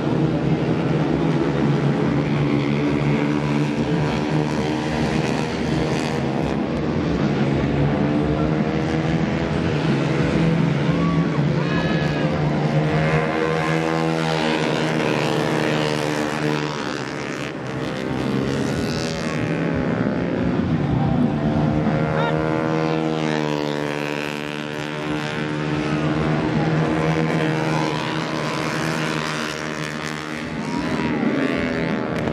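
Several racing motorcycles run hard past the track side in a group, their engines revving. The pitch climbs and falls back repeatedly as they accelerate down the straights and ease off for the corners.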